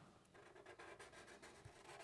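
Faint felt-tip markers drawing on paper, a soft rubbing stroke that starts about half a second in.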